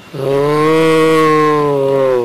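A man's voice intoning one long, steady low note for about two seconds, a drawn-out chant-like vowel without words.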